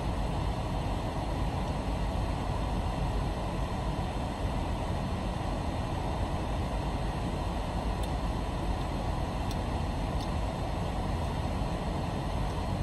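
Steady low rumble and air rush inside the cabin of a parked car that is running, unchanging throughout.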